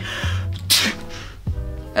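A man imitating a sneeze for effect: a breathy "ah" build-up, then one sharp "choo" burst less than a second in that quickly fades.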